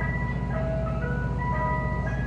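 Mister Softee ice cream truck's chime playing its jingle, a melody of clear, sustained single notes, over the steady low hum of the truck's engine running.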